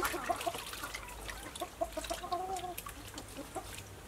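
Chicken clucking: a few short notes at the start, then a quick run of clucks about one and a half seconds in that ends in one longer drawn-out note. Light splashing and clicks of hands working pig stomach in a steel bowl of water lie underneath.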